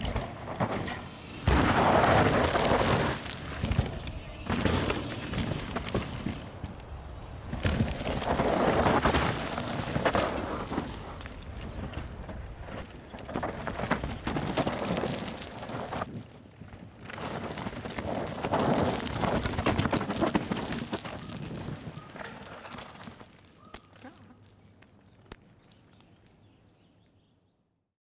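Rocky Mountain Slayer mountain bike ridden fast down a dry, loose dirt and rock trail: tyres crunching and skidding on dirt, with clatter and knocks from the bike. The sound swells and falls several times as the rider comes close, then fades out near the end.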